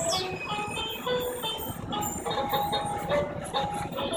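Quick plucked banjo music playing from an animated skeleton-band Halloween decoration's speaker.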